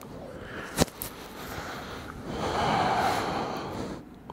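A person breathing out heavily in one long, noisy exhale past the middle, catching breath while resting after a strenuous exercise set; a short sharp click about a second in.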